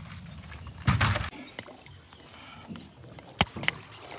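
Handling knocks on a metal boat: a heavy thump about a second in and a sharp knock near the end, with quiet rustling between as crab gear is moved and a trap is hauled in.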